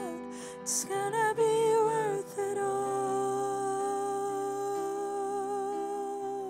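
A woman singing long held notes with a slight vibrato over sustained chords on a Yamaha S90 XS keyboard.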